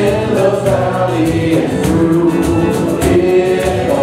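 Live contemporary worship song: voices singing over acoustic guitar and keyboard, with a steady percussion beat.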